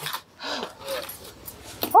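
A woman breathing heavily with short, tired moans, out of breath from walking, ending in a loud 'Oh!'.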